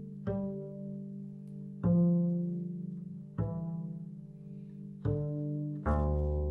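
Double bass plucked pizzicato: five single notes, each ringing out and fading, the last two close together near the end. They sound over a sustained drone note held on a Yamaha Reface CP keyboard, as pitch and intonation practice against the drone.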